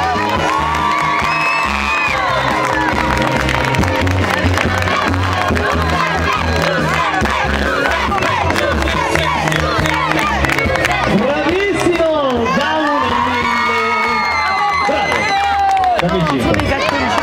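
A festival crowd cheering and clapping, with children shouting, at the end of a song. A backing track plays underneath and stops about three quarters of the way in.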